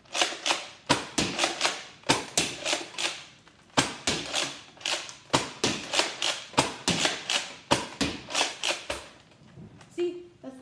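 Nerf Fortnite Legendary TAC foam-dart blaster being fired over and over: a quick, uneven string of sharp plastic clacks, two or three a second, that stops about nine seconds in.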